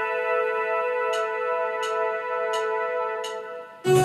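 Electronic music: a single held synthesizer tone with bright harmonics, under soft high ticks about every 0.7 seconds. Near the end the tone fades out, and a new, louder chord comes in.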